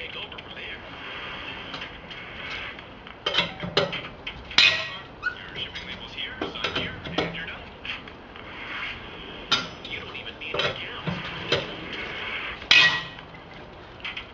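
Lug wrench loosening the wheel nuts on a car's steel wheel: scattered, irregular sharp metal clinks and clanks of the wrench on the nuts.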